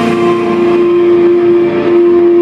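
Amplified electric guitars ringing out on one loud, steady held pitch at the close of a rock song, with the crash of the cymbals dying away early on.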